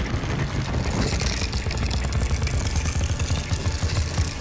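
Film sound effect of a wall of ice bursting up and swirling: a loud, continuous heavy rumble with crackling and hissing over it.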